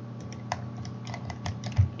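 Computer keyboard and mouse being worked: a run of light, irregular clicks over a steady low hum.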